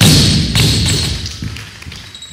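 Loaded barbell with rubber bumper plates dropped from overhead onto a wooden lifting platform: a heavy thud as it lands, then a smaller thud about half a second later as it bounces, and the rumble of the bar settling dies away.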